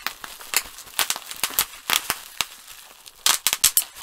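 Plastic bubble wrap of the unpoppable kind crinkling and crackling as it is squeezed in the hands, with a quick run of sharper crackles about three seconds in.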